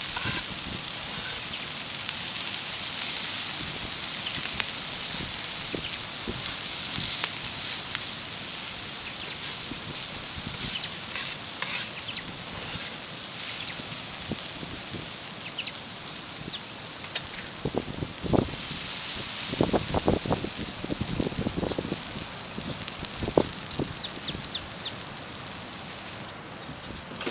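Diced onion and bacon sizzling on a steel griddle plate over a campfire, a steady high hiss. Scattered clicks and knocks from the spatula on the plate or the fire crackling, bunched together about two-thirds of the way through.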